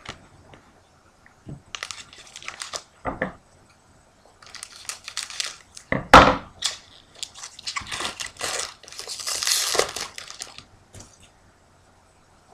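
Foil trading-card pack wrappers crinkling and tearing in several bursts, with the longest and loudest crinkling near the end. Two knocks on the table, the louder one about six seconds in.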